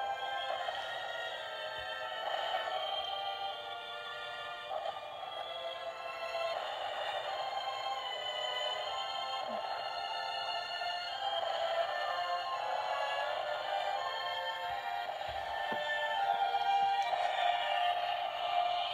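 Battery-powered Hallmark Keepsake castle ornament playing a tune through its built-in speaker after its button is pressed: thin-sounding music with no bass, running steadily until it winds down near the end.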